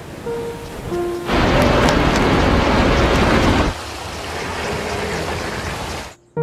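Sound effect of heavy rain and rushing floodwater: a loud, even rushing noise swells in just over a second in and drops back after about two and a half seconds, with a few held music notes over the opening second.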